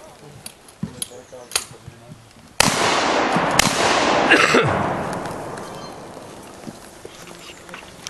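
Shots from a shoulder-fired long gun: a few light clicks of handling, then a sudden loud shot about two and a half seconds in and a second sharp crack a second later, trailed by a long rush of noise that dies away over a few seconds.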